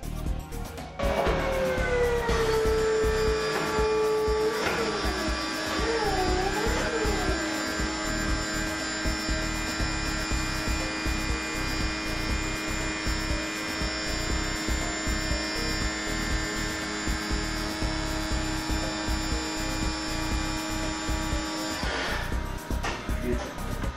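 The Morse 289F drum racker's 12 V battery-powered hydraulic tilt motor running as it tilts a 55-gallon drum to horizontal. It makes a steady whine that drops in pitch as it starts, wavers a few seconds in, then holds steady and cuts off near the end. Background music plays underneath.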